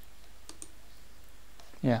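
A couple of faint computer mouse clicks about half a second in, over low steady room hiss.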